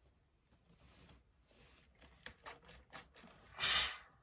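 Oliso TG1600 Pro+ steam iron pressing fabric on an ironing board: faint rustles and small clicks, then a short hiss of steam near the end, the loudest sound.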